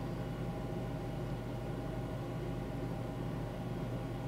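Steady low hum with a faint hiss underneath: background room tone picked up by the microphone between spoken remarks.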